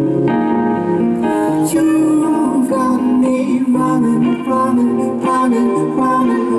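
Live band music: a strummed and picked acoustic guitar over a repeating pattern of plucked notes and a sustained bass line, played through a PA system.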